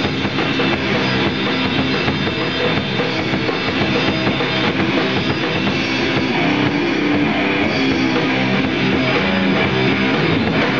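Electric guitar and drum kit playing a rock song live, loud and steady throughout.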